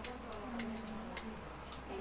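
A few faint, irregularly spaced clicks and ticks, with a distant voice briefly in the background.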